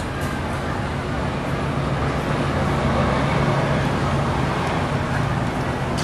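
Street traffic: a motor vehicle's engine running close by, its low hum swelling about halfway through, over steady outdoor background noise.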